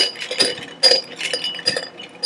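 Several light clinks of small hard objects, irregularly spaced, each with a brief high ring.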